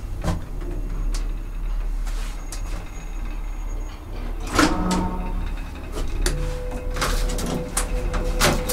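Machinery of a 1957 Schlieren single-speed traction elevator: a steady low hum, a series of clunks and rattles with the loudest about four and a half seconds in, then a steady tone that sets in about six seconds in and holds.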